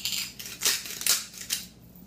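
Trader Joe's salt grinder twisted by hand over a pan, grinding salt crystals in several quick crunching strokes.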